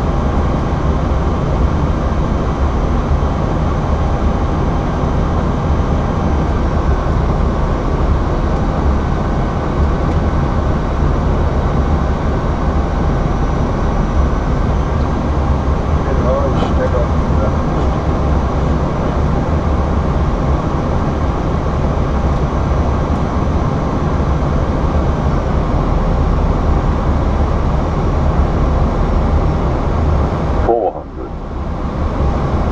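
Steady, loud flight-deck noise of an Airbus A320 on final approach: even airflow and engine noise inside the cockpit, with no change through the approach.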